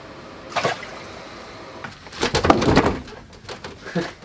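Water splashing and sloshing in an ice-fishing hole as a released walleye is dropped back in: a brief splash about half a second in, then a louder, ragged burst of splashing a little after two seconds.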